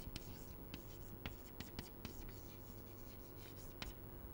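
Chalk writing on a chalkboard: faint, irregular taps and scratches of the chalk stick as an equation is written.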